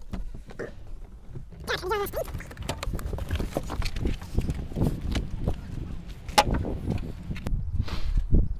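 Footsteps and handling noise as a person gets out of a car and walks to its front: irregular knocks and clicks, a short voice-like sound about two seconds in, and one sharp click about six and a half seconds in.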